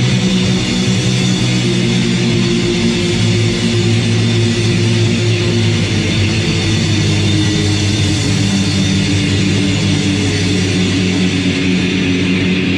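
A live rock band playing a loud punk/metal song: electric guitars over a drum kit.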